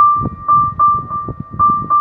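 Electronic keyboard played in a piano voice: one high note struck over and over in an uneven rhythm, about three times a second, with lower notes sounding between.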